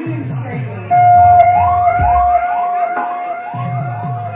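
A dub siren sounding over a bass-heavy sound-system track. A loud held tone comes in about a second in, with a quick rising whoop repeating about twice a second.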